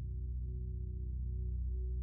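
Background music: a low, steady drone of held tones.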